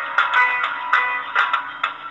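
Electronic arranger keyboard playing a melody on its "Sitar 1" voice over a forró accompaniment rhythm, in a string of plucked-sounding notes.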